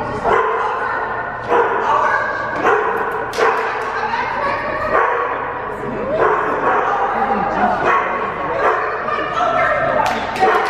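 A dog barking and yipping over and over, short high calls about once or twice a second.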